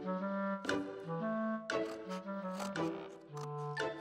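Light background score: a melody of short held notes, changing about every half second, over a bass line.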